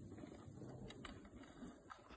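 Near silence: a faint low rumble, with two faint clicks about a second in.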